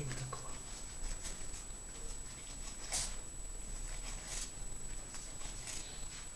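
Kitchen knife slicing a salted mackerel fillet on paper over a cutting board: a series of short scratchy cuts, the loudest about three seconds in.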